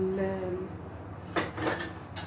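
A metal spoon knocks once against a cooking pot about a second and a half in, then scrapes and clinks briefly while serving food into it. Before that, a woman's voice holds a drawn-out hesitation sound.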